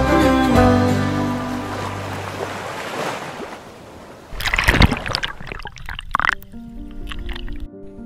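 Background music fades out over the first four seconds. Then water splashes and gurgles around a camera at the water's surface for about two seconds, with soft music starting quietly underneath.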